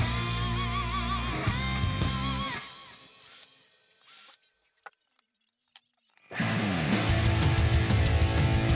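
Background guitar music that fades out about two and a half seconds in, leaving near silence with a few faint clicks, then starts again about six seconds in.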